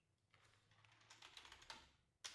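Faint typing on a computer keyboard: a quick, uneven run of keystrokes that starts about a third of a second in.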